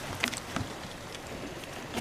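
Low steady outdoor background noise with a few faint clicks in the first half second or so: hands handling a caught fish and working a barbless hook out of its mouth.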